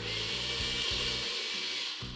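NutriBullet personal blender motor running at full speed, blending a drink of milk, ice and chocolate whey powder. A steady whir that switches on and cuts off suddenly about two seconds later.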